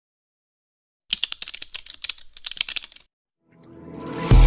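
A quick run of typing clicks, like a computer keyboard, starting about a second in and lasting about two seconds. Music begins to swell in just before the end.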